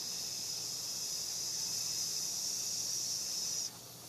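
A person breathing out slowly through the teeth with a long, steady hissing "sss", as in a guided lung-breathing exercise. The hiss stops abruptly near the end.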